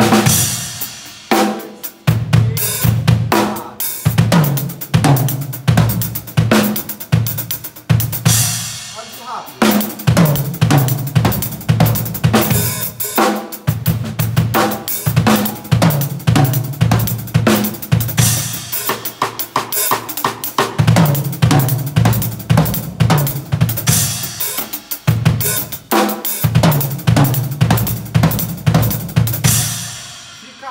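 Acoustic drum kit with a Pearl snare and Sabian cymbals played fast with sticks: a dense gospel-chops lick of rapid snare, hi-hat, tom and bass drum strokes with cymbal hits, repeated in phrases broken by brief pauses. The playing stops near the end.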